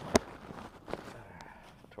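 A plastic sample bottle being handled as its screw lid is tightened down: one sharp knock just after the start, a lighter knock about a second in, and rustling handling noise between.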